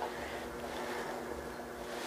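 Quiet room tone: a faint steady hum under low hiss, with no distinct events.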